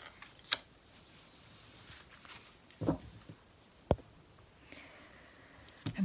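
Oracle cards being handled on a cloth: soft sliding and rustling as cards are drawn from a fanned spread and laid down, with a few sharp clicks and taps, the clearest about half a second and about four seconds in.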